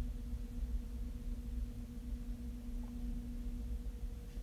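Quiet room tone with a steady low hum.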